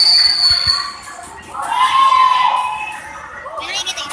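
A whistle blown in one steady, high blast lasting about a second at a volleyball rally, followed by a long drawn-out shout that rises and falls from someone at the court, and a moment of voices near the end.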